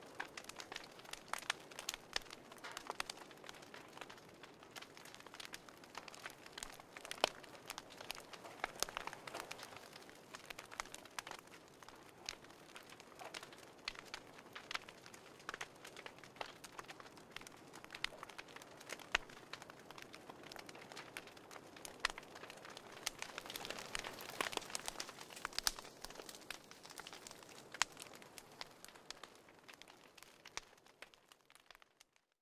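Fire crackling: a dense, irregular run of sharp pops and snaps over a soft hiss.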